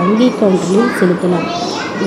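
A fairly high-pitched voice talking continuously: speech only.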